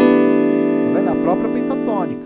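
Electronic keyboard in a piano voice: an E minor chord (E, B, E, B, G) struck at the start and held ringing. A man's voice comes in softly over it in the second half.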